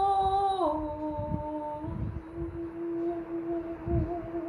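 A woman humming long held notes without words, the tune stepping down in pitch about half a second in and then holding one lower note.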